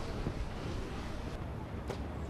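Steady wind noise on the microphone, then near the end a single sharp snap as a compound bow is shot.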